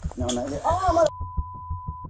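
A voice speaks for about a second, then cuts to a steady beep that lasts about a second. The beep is a censor bleep laid over a swear word.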